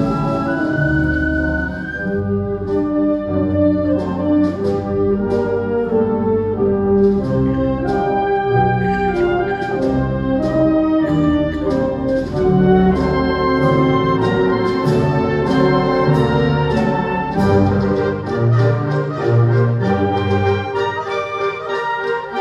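Wind band of brass and woodwinds playing a Spanish processional march, full chords held and moving together, with regular sharp strokes marking the beat from about two seconds in.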